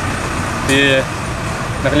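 Steady low rumble of road traffic with idling engines, with a man's voice briefly speaking about a second in.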